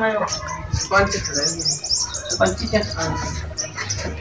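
Small birds chirping in quick, high-pitched runs, thickest through the middle, with brief fragments of men's voices near the start and about a second in.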